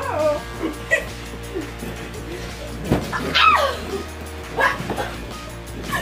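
Pillow fight: a pillow thumps about three seconds in, followed by short high yelps that fall in pitch, with more yelps a little later, over steady background music.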